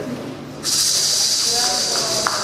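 Held notes of the music stop at the start. About half a second later a steady, high-pitched hiss starts abruptly and carries on.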